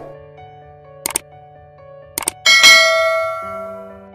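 Subscribe-button animation sound effects over soft background music: two short clicks about a second apart, then a bright bell ding that rings out and fades.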